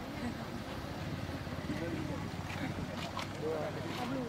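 Indistinct voices of several people talking over a steady low rumble, with a few faint clicks.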